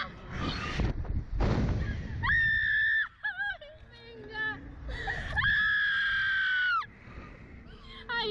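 Women screaming while they are flung on a Slingshot reverse-bungee ride: breathy shrieks, a short high held scream, some small wavering whimpers, then a long high scream that sinks slightly in pitch and stops suddenly.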